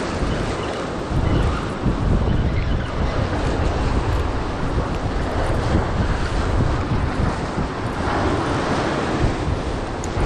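Ocean surf breaking and washing over a rock ledge, with wind buffeting the microphone.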